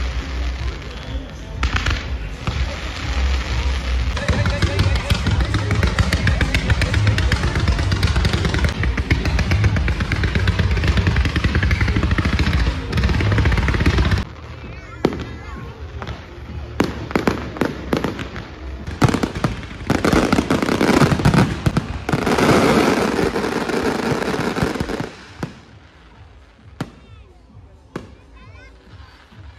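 Fireworks display: launches, bangs and crackling of aerial shells mixed with music. The sound breaks off suddenly about 14 seconds in, a run of sharp bangs and crackles follows, and it turns much quieter about 25 seconds in.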